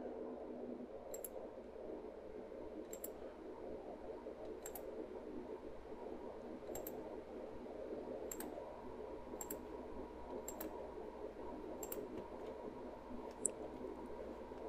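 Computer mouse button clicking about nine times, unevenly, every one to two seconds, each click placing a spline point in a CAD sketch, over a steady low room hum.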